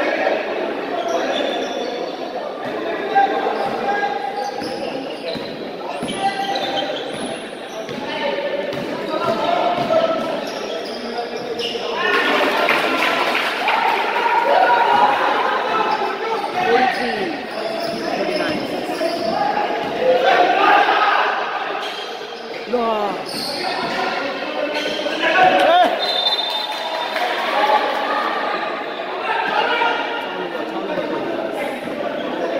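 A basketball being dribbled and bounced on an indoor court during live play, echoing in a large hall, under continual shouting voices of players and spectators.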